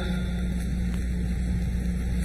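Steady low background hum with a constant low tone, and a faint click about a second in.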